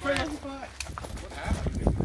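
A brief, wordless human voice, then a few dull knocks and low thumps.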